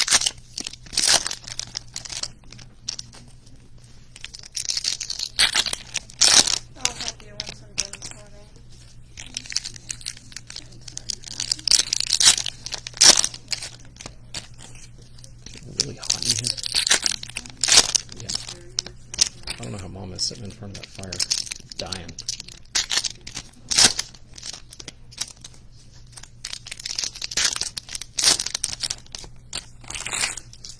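Foil wrappers of 2020 Topps Stadium Club Chrome baseball card packs being torn open and crinkled by hand, in repeated spells of crackling with sharp clicks. Faint voices can be heard under it.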